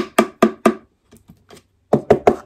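Knuckles rapping on a hollow, thin-walled casting of a brain in slightly rubbery resin: four quick, sharp knocks in the first second, a few faint taps, then more knocks starting near the end.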